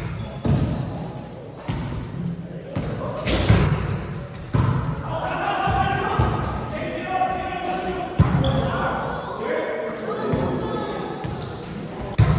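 Several sharp thumps of a volleyball being played, echoing in a large gym hall, with indistinct voices of players talking through the middle.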